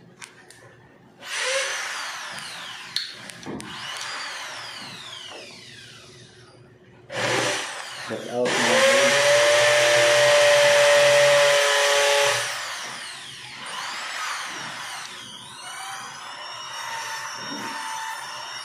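A power tool's electric motor whirring in two runs: one of about five seconds that winds down, then a louder run that spins up to a steady whine for about four seconds before winding down.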